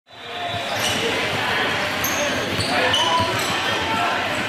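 Basketball gym ambience: balls bouncing on a hardwood court among the indistinct voices of players and onlookers, fading in over the first half second.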